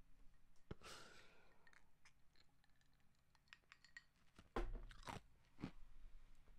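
Faint drinking sounds as a man takes a drink from a glass: small mouth and swallowing noises and light clicks of the glass. A soft knock comes about four and a half seconds in, with a smaller one about a second later.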